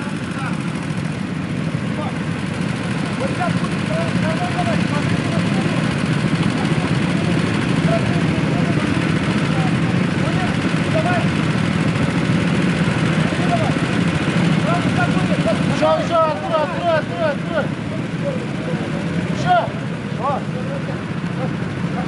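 Several go-kart engines idling together on the start grid, a steady drone, with voices calling over it, busiest around three-quarters of the way through.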